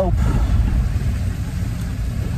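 Steady low rumble inside a car's cabin: engine and road noise from a moving car.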